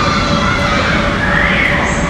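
Children's voices shouting and calling over the steady din of a busy indoor play hall, with one rising-and-falling shout about halfway through.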